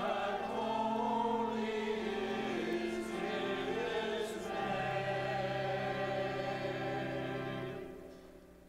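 Church singing with organ accompaniment: many voices over steady low held organ notes. The music ends on a long held final chord that stops just before the end.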